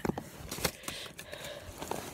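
Rummaging and phone handling: a few scattered knocks and scrapes with a low rustle between them.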